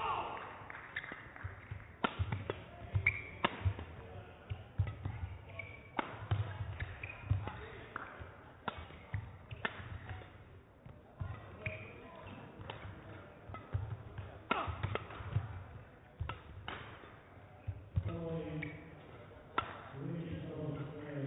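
Badminton rally: sharp, irregular shuttlecock strikes off the rackets, with thudding footsteps and short shoe squeaks on the court. A voice sounds near the end.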